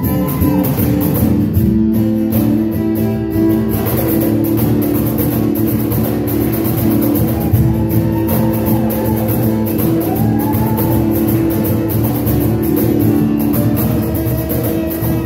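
Acoustic guitar played live, strummed chords ringing on with a steady rhythm.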